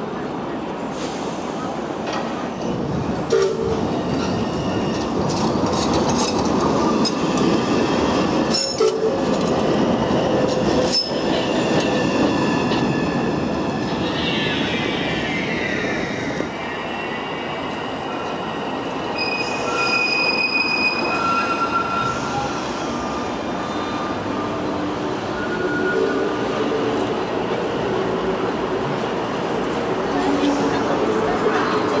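Manchester Metrolink T68 trams running on street track, their wheels squealing in high, shifting tones on the curves, over a steady hum of city street noise.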